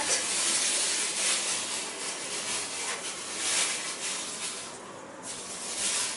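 Thin plastic hair cap crinkling and rustling as it is stretched and pulled on over the head, an uneven rustle that dips briefly near the end.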